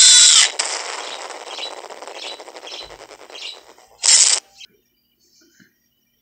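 Horror logo sound effects: a brief, loud, shrill cry whose pitch rises and falls, then a crackling hiss that fades away over about four seconds, cut by a second short loud burst about four seconds in.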